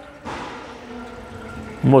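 Automatic transmission fluid draining out of a Toyota Hilux's transmission filter into a drain pan: a splashing pour that starts shortly in and gradually fades.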